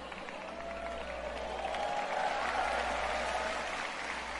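Audience applauding with crowd voices, growing louder toward the middle and easing off near the end.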